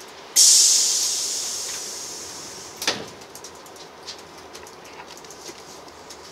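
A sudden loud hiss of released compressed air inside a railway carriage, fading away over about two and a half seconds, then a single sharp knock. The carriage's low running noise continues underneath.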